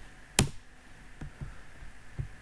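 One sharp computer key or mouse click about half a second in, the loudest sound, followed by a few fainter clicks and soft desk knocks.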